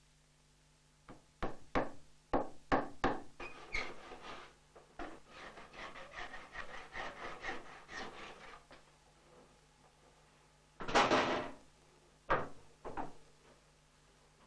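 A claw hammer drives a wooden wedge into a chair leg's tenon through the seat, with about eight sharp knocks in quick succession. Then come a few seconds of quicker rasping strokes, a handsaw trimming the wedge flush with the seat. A single loud scraping stroke comes after a pause, and two last knocks near the end.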